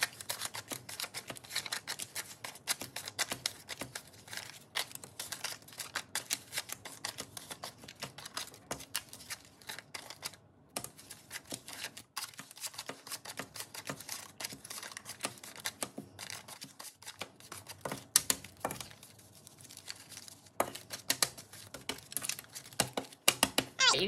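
Paper banknotes being handled and sorted by hand: an irregular run of crisp rustles, flicks and soft slaps as bills are picked up, flipped through and laid down on a hard tabletop.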